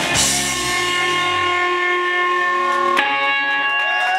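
Live rock band hitting a chord together on electric guitar, bass and drums and letting it ring. The bass fades out after about a second and a half, leaving the electric guitar's held notes, and about three seconds in the guitar strikes a new sustained note.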